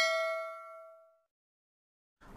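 Ringing tail of a bell 'ding' sound effect from a subscribe-button and notification-bell animation. It fades out within about a second.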